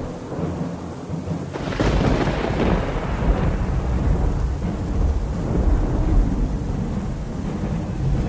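A thunderclap breaks about a second and a half in, then rolls on as a long rumble over steady rain: a stormy interlude sound effect.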